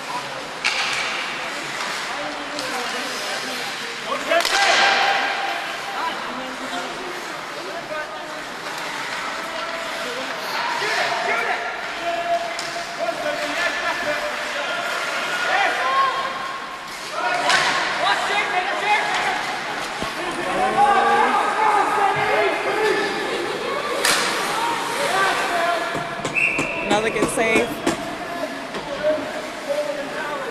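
Ice hockey play: a few loud slams of hits against the rink boards, over voices shouting and talking on and around the ice.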